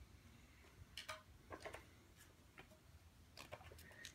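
Near silence with a scattering of faint ticks and scratches: a pen writing on a card and paper being handled.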